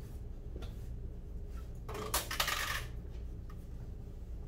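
A brief clatter of small hard objects, about a second long in the middle, with two sharper clicks in it, over a steady low room hum.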